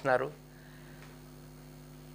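A steady electrical hum of several fixed low tones, like mains hum in the recording, heard in a pause between a man's words; his last word trails off at the very start.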